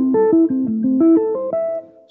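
Electric guitar played fingerstyle with free strokes: a quick run of single plucked notes, about six a second, that steps down in pitch and then climbs again before dying away near the end.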